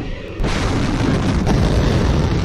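Missile launching from a silo: a sudden loud rushing roar starts about half a second in and holds steady, deep and dense.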